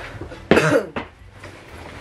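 A young man coughs once, a short, loud cough about half a second in.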